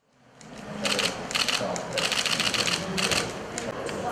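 Camera shutters clicking in short rapid bursts, several times, over the chatter of several people.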